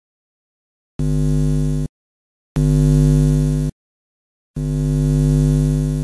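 Electric buzzing sound effect for a neon logo lighting up: three steady low buzzes, each about a second long, separated by short silences, the first starting about a second in.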